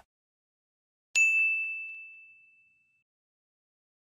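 A single bright ding sound effect, struck about a second in and ringing out as it fades over about a second and a half.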